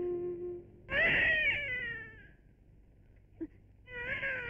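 A drawn-out, high wailing cry about a second in, lasting just over a second and falling in pitch, then a brief faint sound near the end.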